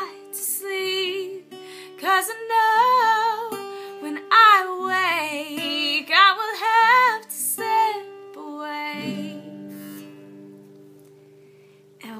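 Woman singing with her own strummed acoustic guitar accompaniment. The singing stops about eight seconds in, and a last guitar chord rings out and slowly fades.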